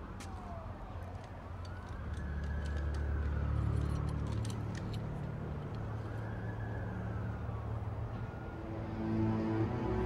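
Police sirens wailing, each rising and falling slowly in pitch, over low sustained film-score music that swells about two seconds in and again near the end.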